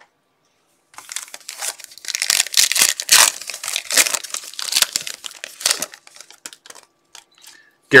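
Topps Tribute baseball card pack wrapper torn open and crinkled by hand: a dense run of crinkling from about a second in to about six seconds, then a few faint rustles as the cards are drawn out.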